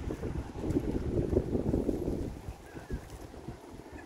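Wind buffeting the phone's microphone: a gusting low rumble that eases off about halfway through.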